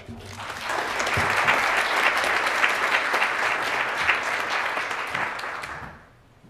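Audience applause at the end of a talk: many hands clapping, building over the first second, holding steady, then dying away near the end.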